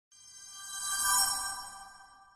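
Electronic intro logo sting: a shimmering chord of steady high tones that swells to its loudest a little past a second in, then fades away.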